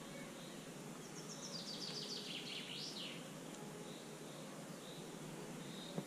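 A songbird sings a quick run of short high notes, each sliding downward, about a second in. A few fainter high calls follow later, over faint steady outdoor background noise.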